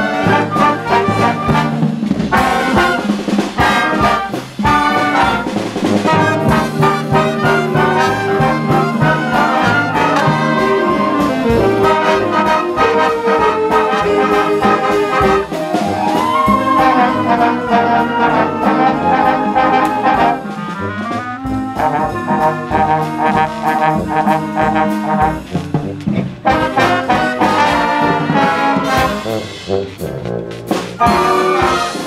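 Community concert band of woodwinds and brass playing a piece together, under a conductor.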